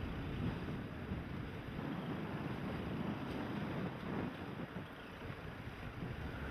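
Wind buffeting the microphone over the rush and splash of choppy water as a keelboat sails fast through the waves in a fresh breeze. A steady noise with no distinct events.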